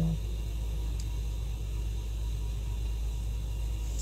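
Steady low hum and hiss of background noise with no other activity, and a faint tick about a second in.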